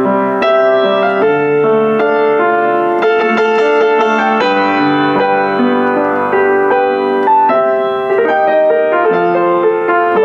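Kawai CE-7N upright acoustic piano, built around 1982, being played: a classical-style passage of melody over chords, its notes ringing on at a steady level.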